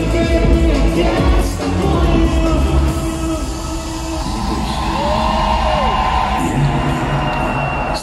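Live Russian pop music played loud through an arena PA, with a male lead vocal and crowd noise, recorded on a phone in the audience. A heavy bass beat drops out about halfway through, leaving held synth chords and a sliding vocal.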